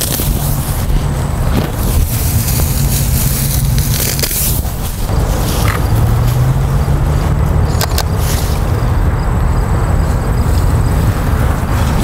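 Wind buffeting the microphone: a loud, steady low rumble, with tall grass rustling and a few short clicks in the second half.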